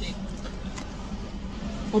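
Steady low hum heard from inside a stationary car's cabin, with a faint constant tone.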